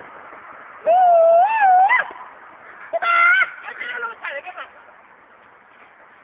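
A person's loud, wavering yell lasting about a second, its pitch rising and falling, followed about a second later by a burst of shorter shouts.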